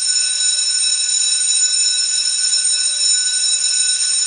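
Electric school bell ringing steadily, a sound effect for the end of class, starting at once.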